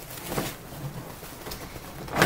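Hands rummaging in a reusable tote bag, with plastic-wrapped tissue paper packs and the bag rustling; the loudest rustle comes about half a second in.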